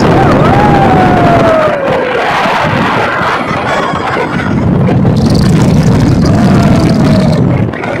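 Heavy wind rushing over the microphone on a moving motorbike, with road noise underneath. A high voice glides downward in a squeal about half a second in, and a fainter one comes near the end.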